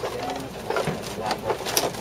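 Irregular knocks and clatter of people stepping along a bamboo pier and into wooden boats, over a busy background.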